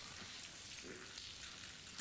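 Low, steady hiss of background noise in a pause between lines of dialogue, with a faint short murmur about a second in.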